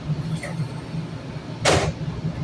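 Steady low hum of a stopped light-rail car's equipment, broken about one and a half seconds in by a short sharp hiss.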